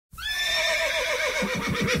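A horse whinnying: one long call that starts high and steady, then breaks into a fast quavering that falls in pitch.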